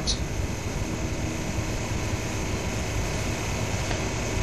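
Steady hiss with a faint low hum from an open telephone line, with no one speaking on it.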